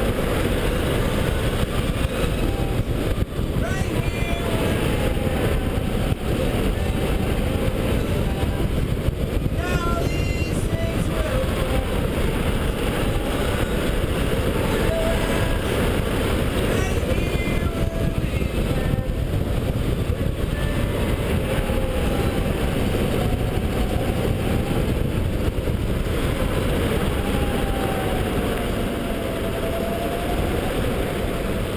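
Wind rushing over a helmet-mounted camera at speed, with the whine of an 84V electric go-kart motor rising and falling as the kart speeds up and slows.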